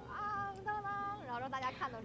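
A woman singing a short wordless phrase in a high voice: two held notes, then a wavering, sliding run. It is a snatch of film music, sung between the words of her sentence.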